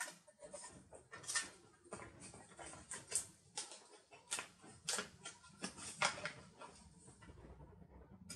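Paper planner pages and a sticker sheet being handled, with stickers peeled off and pressed down: an irregular series of crinkles, scratches and taps.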